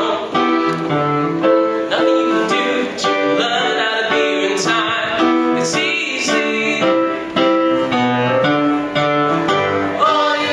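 Piano playing chordal accompaniment in an even rhythm during an instrumental passage of a pop song. The vocal group comes in near the end.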